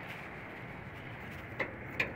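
Steady low background noise with a faint click near the end.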